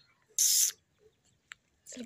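A person making short hissing "psst" calls to get a dozing dog's attention: one sharp hiss about half a second in, then a faint click.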